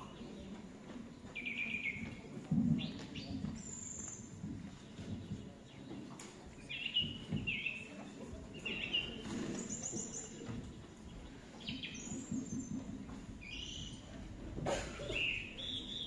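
Recorded birdsong played as a stage sound effect: short chirps and trills coming every second or so, over a low murmur from the hall.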